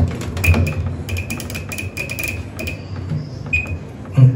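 Bosch top-load washing machine's touch control panel beeping as its buttons are pressed: several short high-pitched beeps, most in a quick run in the middle, and one more near the end.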